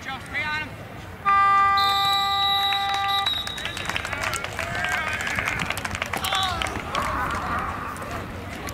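A field scoreboard horn sounds one steady blast of about two seconds, with a higher piercing tone joining it partway through, ending the game. Players and spectators then shout and call out.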